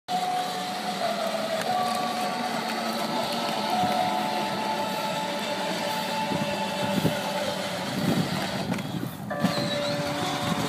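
Child's battery-powered ride-on toy Jeep driving over grass, its electric drive motors and gearboxes running steadily, with music playing along over the motor noise.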